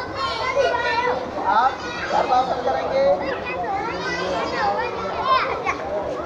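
A group of children talking and calling out over one another, a steady babble of young voices.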